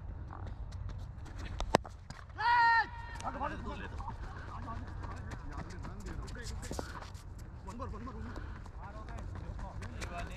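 A single sharp crack of a cricket ball struck by the bat, a little under two seconds in, followed at once by a short loud shout from a player. A steady low rumble runs underneath.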